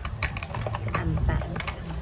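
A quick, irregular run of light clicks and taps, the sound of small hard objects being handled, over a low rumble.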